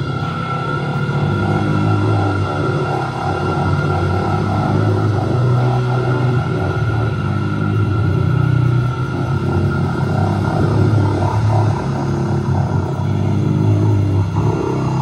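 Experimental rock band playing live: a high note held steady over shifting low bass notes, with a pulsing figure in the middle range.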